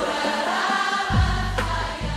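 Choral music: a choir singing a song, with low bass notes coming in about a second in.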